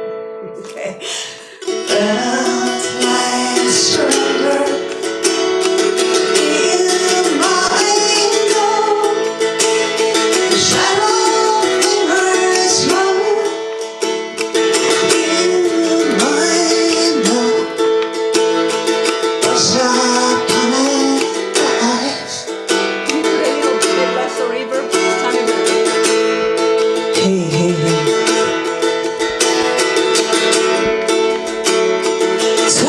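A woman singing a slow ballad to her own acoustic guitar. The sound dips briefly at the start and the song carries on from about two seconds in.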